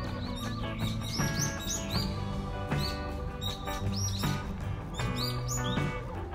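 Background music with a steady beat, overlaid by repeated short, high bird chirps.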